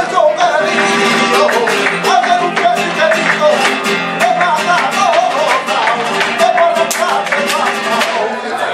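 Live flamenco alegrías: a male cantaor singing with wavering, ornamented lines over a strummed and plucked Spanish flamenco guitar. Sharp hand claps (palmas) keep the rhythm throughout.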